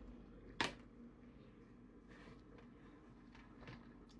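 A single sharp click about half a second in, then near-silent room tone with a few faint ticks near the end.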